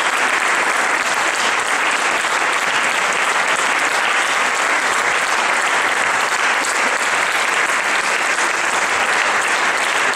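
Audience applauding: dense, steady clapping from many hands that keeps up evenly throughout.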